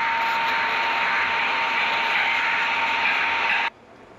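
Thermal label printer built into a weighing scale running as it prints a label: a steady mechanical whir with a thin steady whine over it, cutting off suddenly near the end.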